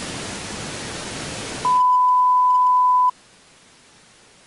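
Burst of loud static hiss lasting under two seconds, then a single steady electronic beep, louder still, held about a second and a half before cutting off suddenly.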